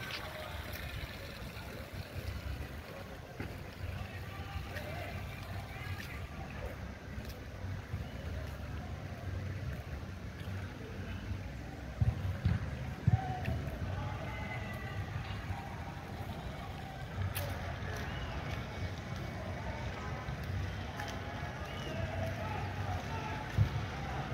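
Outdoor ambience: faint distant voices over a steady low rumble, with a few short high chirps.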